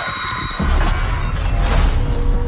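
Sci-fi movie trailer sound design: a deep low rumble with a thin high ringing tone in the first half-second, building into a rushing swell near the end.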